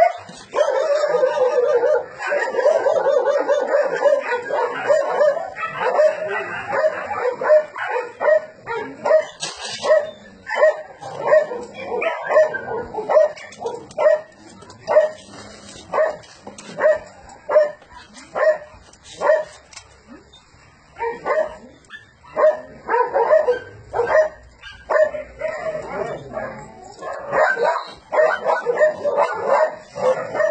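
Dogs barking and yipping: dense at first, then barking at a steady pace of about one and a half barks a second. There is a brief lull about twenty seconds in, then the barking picks up again.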